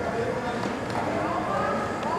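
Indistinct voices talking in the background, with the soft hoofbeats of a horse cantering on arena sand.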